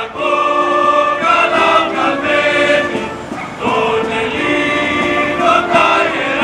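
A group of voices singing slowly together in long held notes.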